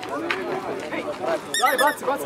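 A rubber squeaky toy squeezed in a quick run of squeaks near the end, the kind handlers use to catch a show dog's attention. Voices talk underneath.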